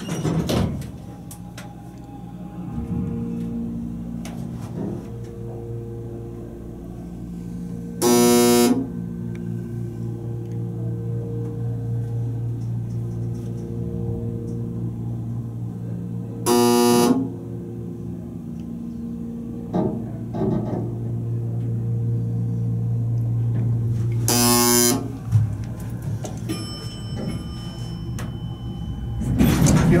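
A hydraulic scenic elevator traveling, with a steady electric hum through the ride. Three short, loud buzzing tones sound about eight seconds apart, near a third of the way in, about halfway, and past three-quarters.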